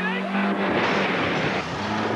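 A man imitating a car's noise with his voice: a steady drone, then a hissing screech about a second in, and the drone again near the end.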